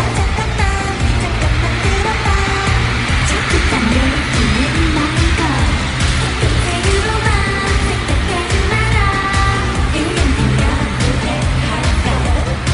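K-pop girl group singing live over a pop backing track with a heavy, steady beat.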